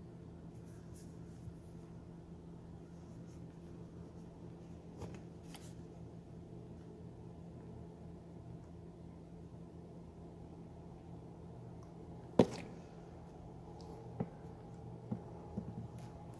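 Faint handling sounds of a plastic air hose and a squeeze bottle of oil over a steady low hum, with one sharp click about twelve seconds in and a few lighter clicks near the end.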